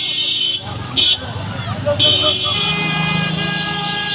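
Motorcycle engine running, rumbling unevenly at first, then settling into a steady hum over the last second and a half.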